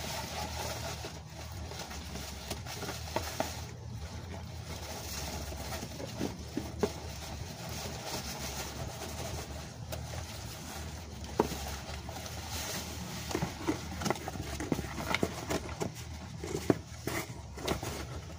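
A large cardboard box handled and lowered over a small tree, with scattered scrapes, taps and rustles of cardboard against leaves, over a steady low hum.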